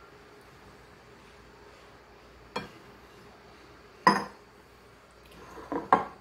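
Glass kitchenware clinking against a large glass mixing bowl: a light clink about two and a half seconds in and a louder knock with a short ring about four seconds in, over quiet room tone.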